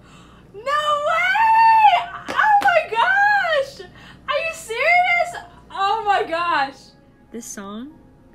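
A woman squealing with excitement: four long, very high-pitched cries, each rising and falling, followed by a shorter, lower vocal sound near the end.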